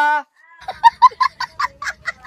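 A quick run of short, repeated honking calls, about five a second, starting about half a second in.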